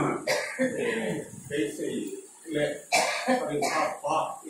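People talking at close range, with a throat-clearing sound among the talk.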